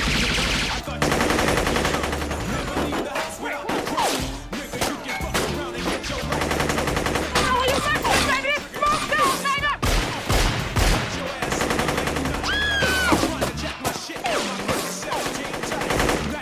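Gunfire in a shootout: rapid volleys of shots, a dense fast run early on and scattered bursts after, mixed with background music and shouting.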